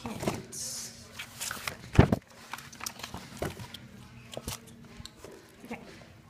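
Handling noise from a phone being carried and moved about: scattered rubbing and knocks, with one loud thump about two seconds in.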